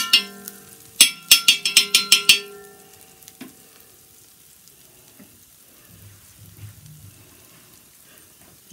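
A steel spoon struck about eight times in quick succession against metal, each strike ringing, starting about a second in. Under it and after it, a dosa fries faintly in oil on a cast-iron tawa.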